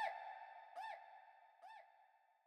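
Echoes of a short electronic synth blip fading away: a pitched chirp that rises and falls, repeating three times a little under a second apart and getting fainter each time, over a faint steady tone.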